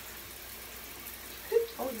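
Faint steady hiss with no distinct sounds, then a woman's voice saying 'oh' near the end.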